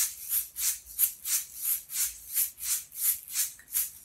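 Handheld shaker rattled in a steady even rhythm, about three shakes a second, by an up-and-down wrist motion.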